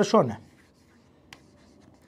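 A marker writing on a board, faint, with a single sharp tap about a second and a third in, after a short spoken word at the start.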